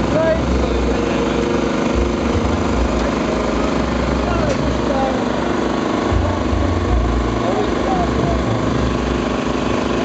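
A steady mechanical drone like a running engine, with an uneven low rumble, under the chatter of a crowd.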